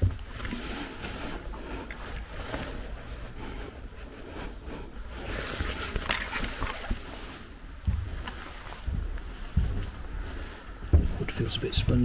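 Footsteps and knocks on bare wooden attic floorboards, with camera handling noise and rustling. A few heavier low thumps come in the second half.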